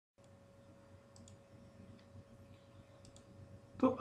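A few faint computer mouse clicks, single and in quick pairs, over a faint steady hum. A man's voice starts just before the end.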